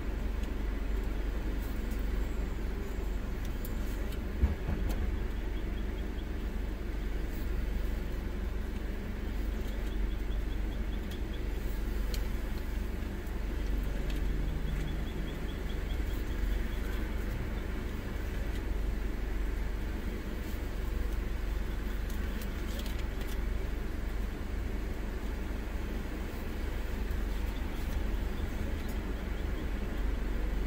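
Car engine idling, a steady low rumble heard from inside the cabin, with a single sharp click about four seconds in.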